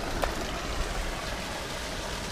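Steady wash of flowing water, an even rushing noise with no distinct splashes.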